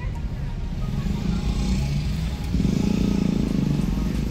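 Car cabin road noise while driving: a steady low rumble from the engine and tyres, growing louder with a low hum about two and a half seconds in.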